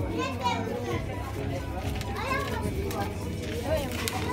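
Indistinct voices talking, a child's voice among them, with no distinct sound besides.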